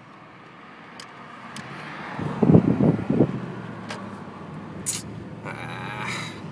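Cabin sound of a moving 2003 Toyota Camry, with engine and road noise building over the first two seconds. A cluster of loud, low thumps comes about two and a half seconds in.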